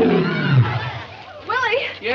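Lion roaring once, a long call falling steadily in pitch and fading out about a second in. A person's voice follows near the end.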